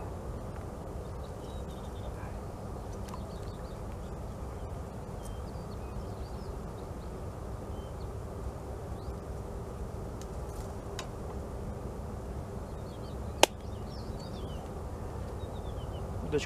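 Quiet lakeside outdoor ambience: a steady low rumble with faint, scattered bird chirps and a faint steady hum. One sharp click about thirteen seconds in.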